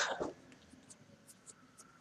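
The end of a spoken word, then a few faint, scattered clicks over quiet room tone.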